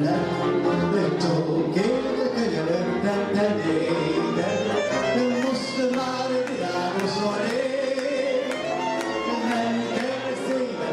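A man singing a Hungarian csárdás into a microphone, accompanied by a Gypsy band of violins, cimbalom, double bass and clarinet.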